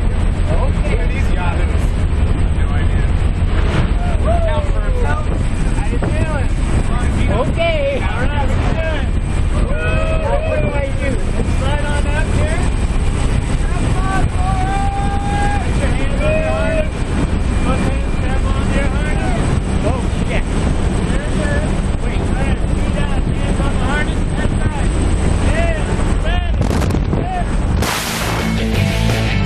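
Loud, steady rush of slipstream wind and engine noise through the open door of a small jump plane in flight, with voices raised over it and partly buried beneath it.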